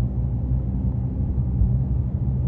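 Steady low rumble of a car driving at a steady speed, engine and road noise heard inside the cabin.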